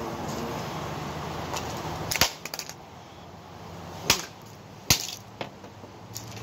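Pieces of a smashed Samsung Galaxy smartphone knocking and clicking against a concrete patio as they are handled. There are three sharp knocks, about two, four and five seconds in, and a few lighter clicks, over a steady low hum in the first two seconds.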